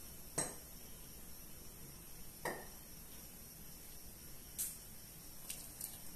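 A few light knocks against a metal cooking pot, spaced about two seconds apart, the first the loudest, with fainter ticks near the end.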